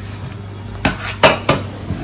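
Stainless steel dishes clinking as a meal is set out: about four sharp metal knocks in the second half, over a low steady hum.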